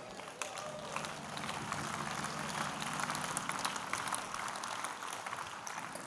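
Congregation applauding, many hands clapping at once, with a faint steady low tone underneath.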